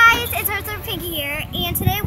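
A girl's voice, high and sing-song, its pitch gliding up and down.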